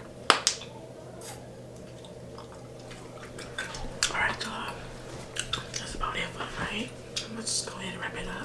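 A mouthful of bubble gum being chewed close to the microphone: two sharp, loud snaps of the gum just after the start, then from about halfway a busy run of wet smacking and clicking.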